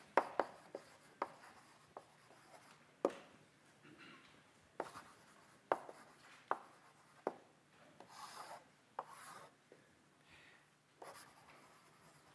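Chalk writing on a blackboard: a string of sharp taps as the chalk meets the board, with short scratchy strokes in between.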